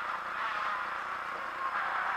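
Renault Clio rally car's engine running under way, heard muffled from inside the cabin along with road and tyre noise, at a fairly steady level.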